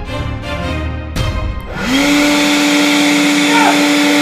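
Background music, then about two seconds in a Worx electric leaf blower starts up: its motor whine rises quickly and holds steady over the rush of air.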